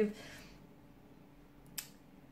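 Near silence with faint room tone, broken about three-quarters of the way through by a single short, sharp click.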